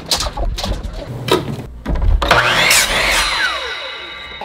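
A few knocks and clatter, then about two seconds in a power miter saw spins up, cuts through a wooden board and winds down with a falling whine.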